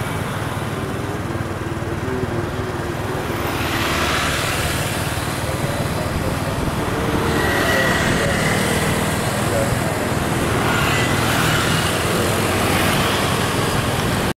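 Motorcycle and road-traffic noise from a moving motorcycle taxi: a steady rushing of engines, tyres and passing vehicles that swells a little about four seconds in and again around eight seconds.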